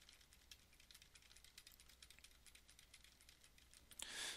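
Near silence broken by faint, rapid, irregular clicking and ticking of a pen stylus working on a drawing tablet as handwritten lines are erased.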